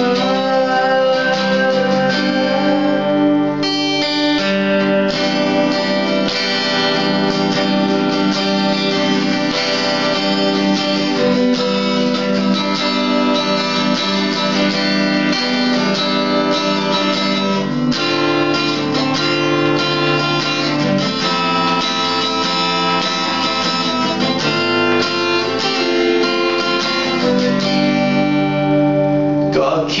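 Acoustic-electric guitar strummed steadily through an instrumental passage of a pop song, chords ringing without singing.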